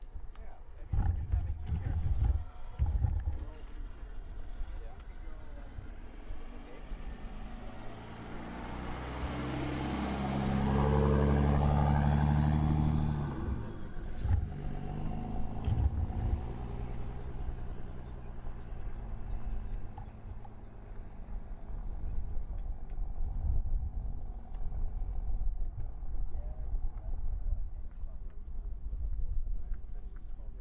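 Motor vehicle engine and road noise building up over several seconds to its loudest about 11 to 13 seconds in, then dropping away sharply, with low rumbling thumps around it.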